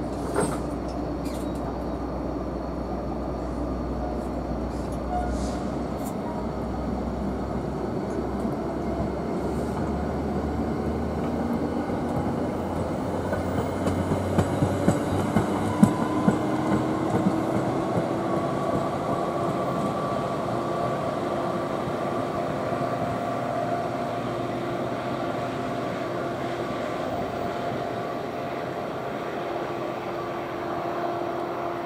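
Commuter train of Comet coaches rolling past and pulling away, hauled by a PL42AC diesel locomotive: a steady rumble of wheels on rail, with a cluster of clicks and knocks as the trailing cab car's wheels pass close by in the middle, and tones that slowly rise as the train gathers speed.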